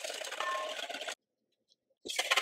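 Wire hand whisk stirring condensed milk and gelatin in a stainless steel bowl, a steady rattle and scrape of metal on metal that cuts off suddenly about a second in.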